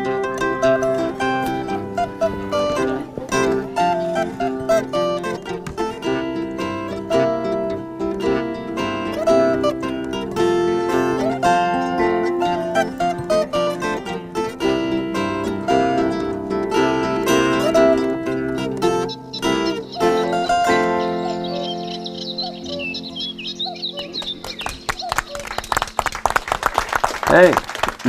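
Zither playing a plucked melody over chords, the notes ringing and decaying. Near the end a held chord dies away and a rapid run of sharp taps follows.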